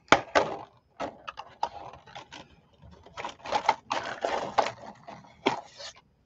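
Thin plastic stencil being peeled by hand off a painted journal page: irregular crackling and clicking as it flexes and lifts away.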